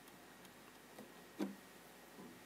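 Faint ticks and taps of a stylus on a writing tablet as handwriting is added: a few short clicks, the loudest about one and a half seconds in.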